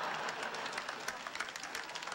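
Audience applauding, a dense patter of many hands clapping that tapers slightly toward the end.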